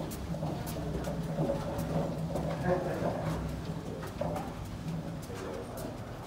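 Appliance dolly loaded with a glass display case rolling along a carpeted hallway: a steady low rumble with scattered light clicks.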